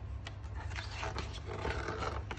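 Paper page of a picture book being handled and turned by hand: a few short, soft rustles, more of them in the second half, over a steady low hum.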